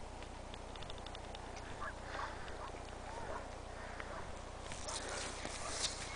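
Faint distant calls, then crunching footsteps in snow close by over the last second or so.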